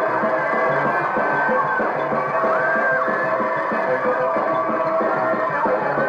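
1960s soul band music with a steady beat and a melodic line gliding above it.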